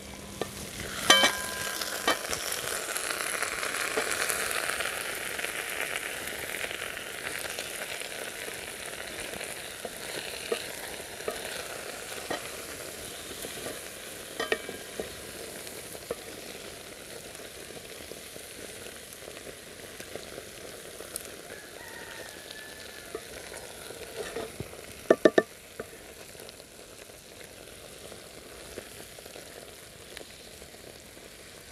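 Potato stew sizzling and bubbling in an aluminium pot over a wood fire while it is stirred with a wooden spoon. The sizzle is strongest in the first few seconds and then eases. A ringing metal clank comes about a second in, and a few quick knocks of spoon against pot come near the end.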